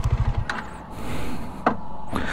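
Bajaj Dominar 400's single-cylinder engine ticking over at idle, its low even pulsing dying away about half a second in. Then a soft hiss with two short clicks.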